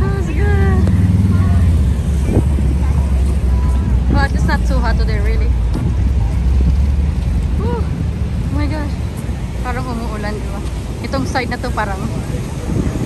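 Road traffic passing close by: a city bus and a motorcycle going past. Their low engine rumble is loudest in the first couple of seconds and fades out about seven seconds in. Passers-by are talking over the background.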